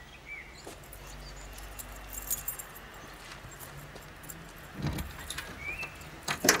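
Light metallic jingling and clicking about two seconds in, over a low steady hum, with a couple of short high chirps and a dull thump near the end.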